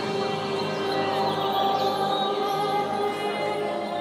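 Film soundtrack music of long held notes, with a choir-like quality, playing over a theatre's speakers.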